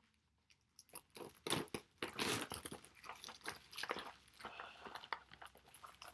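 Plastic shrink wrap crinkling and crackling as it is pulled off a cardboard box, in irregular bursts starting about a second in.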